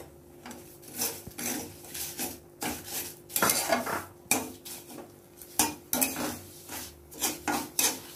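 Flat steel spatula scraping and stirring semolina around a steel kadhai, in quick repeated strokes about two or three a second with light metallic clinks. The semolina is being roasted and must be stirred constantly so that it does not burn on the bottom.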